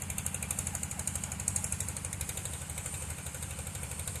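Stationary engine driving a pump, running steadily at a fast, even chug.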